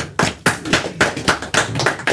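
A small audience applauding, the claps coming thick and uneven.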